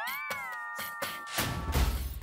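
Comic background music cue: a wavering, pitched tone glides upward, then holds one steady note for over a second, over light regular percussion and a low bass swell near the end.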